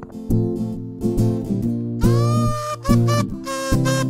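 Acoustic guitar strumming chords as the song opens. About halfway through, a voice comes in over it with long held sung notes.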